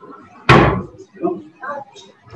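A single loud thump about half a second in, dying away quickly, with faint talk around it.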